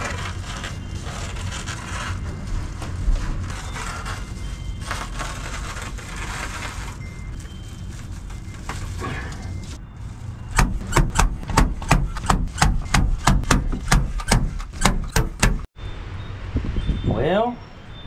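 A hand staple gun fastening reflective foil insulation to the wooden staves: a quick, even run of sharp clacks, about three a second, in the second half.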